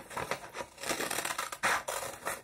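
Scissors snipping through a sheet of coloured paper in a quick series of short cuts, about three a second, as a circle is cut out freehand.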